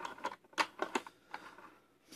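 Light, irregular metallic clicks from an old Taylor Group 2 safe combination lock as its brass lever and cam wheel are pushed and worked by hand, about half a dozen in two seconds.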